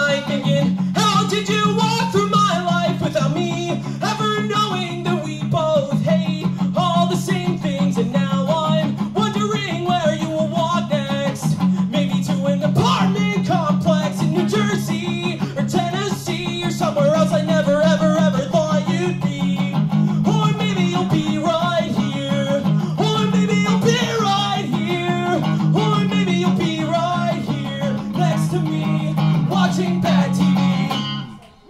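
A man singing with a solo electric guitar, played live through an amplifier. The strummed guitar holds a steady, dense bed under the voice throughout.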